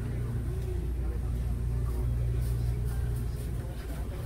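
Steady low rumble of a vehicle in motion, with a faint voice underneath.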